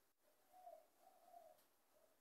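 Near silence, broken by two faint, low bird calls in the background, each about half a second long; the second comes just after one second in.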